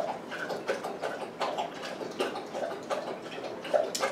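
Close-up eating sounds: a mouthful of fish chowder taken from a spoon and chewed, with irregular small wet mouth clicks about two a second.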